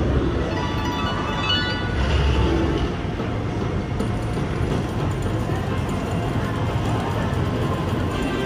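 Dancing Drums Explosion slot machine playing its game music and sound effects, with a run of bright chimes in the first two seconds, over a steady casino-floor din.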